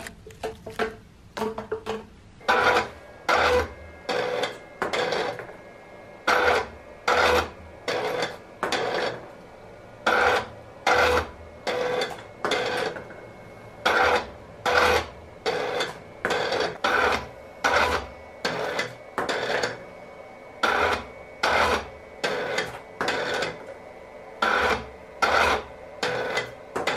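Two stepper motors turning the plastic diaphragms of a 3D-printed shuttlecock dispenser open and shut in turn. Each move is a short grinding whir with a whine in it, and the moves repeat a little more than once a second.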